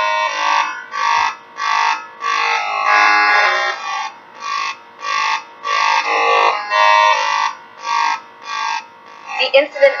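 A synthesized, electronic-sounding voice speaking in short flat-pitched syllables with brief gaps between them, from a cartoon's soundtrack.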